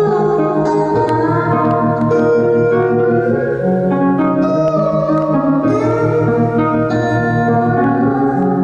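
Live instrumental music with no singing: sustained keyboard chords with plucked strings, and a melody line that glides in pitch.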